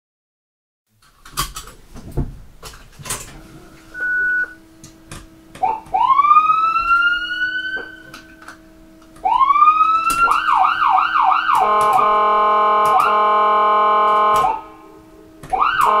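Ambulance siren starting up after a few clicks and knocks and a short beep. It winds up in two rising sweeps, goes into a fast up-and-down warble, then holds a steady tone for about three seconds. It cuts off, then winds up again near the end, with a faint steady hum underneath.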